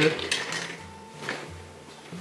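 Metal tools clinking as a pair of scissors is picked up from among them: a few short, light clicks.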